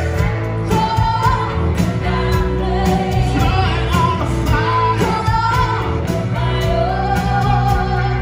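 Rock band playing live through a festival PA: singing over a steady drum beat, with bass, electric guitar, piano and violin.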